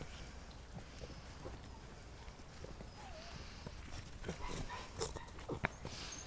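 Faint rustling and footsteps of dogs moving through grass, with scattered small knocks and a short wavering call about three seconds in.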